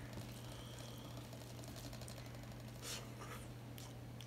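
Fingers mixing rice on a stainless steel plate: faint soft rubbing and scraping, with a brief louder scrape about three seconds in, over a steady low hum.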